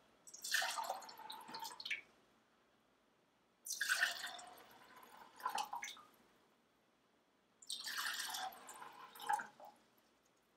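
Clear liquid poured from a pitcher into three tumblers in turn, each pour lasting about two seconds with short silent gaps between.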